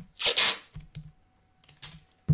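Tape being pulled off the roll and torn: a harsh rip lasting about half a second, then a shorter one near the end, with a few soft knocks of handling in between.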